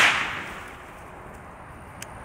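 The fading echo of a .308 rifle shot fired through a muzzle brake dies away over the first half second or so, leaving a quiet outdoor background.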